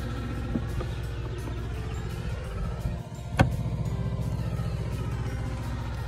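A steady engine hum from running machinery, with one sharp click a little over halfway through.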